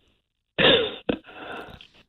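A short vocal noise from a caller heard over a telephone line, like a throat clear, starting about half a second in. It is followed by a click and a fainter, breathy stretch that dies away near the end.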